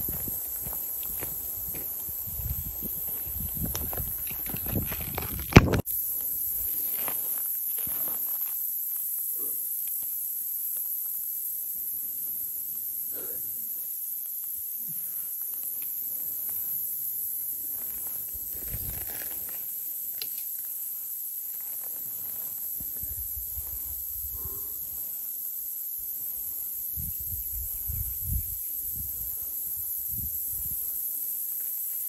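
Footsteps crunching on stony ground and brushing through dry scrub, uneven and in bursts, with one sharp loud knock about five and a half seconds in. A steady high-pitched drone runs underneath.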